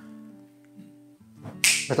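Soft background film score of sustained, held notes through a pause in dialogue. Near the end a man's voice cuts in with a sharp breath and a word.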